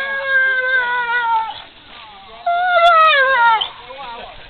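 Newfoundland dog whining: two long, high whines, the second falling in pitch as it ends.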